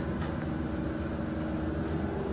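Steady, even background hum and rumble with no distinct events.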